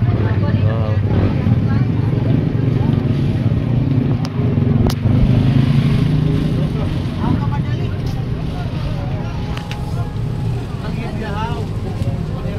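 A motor vehicle's engine running close by, a steady low rumble, with voices in the background and a few sharp clicks.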